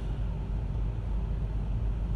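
Steady low rumble of road traffic, with idling vehicle engines close by in a stopped queue of city traffic.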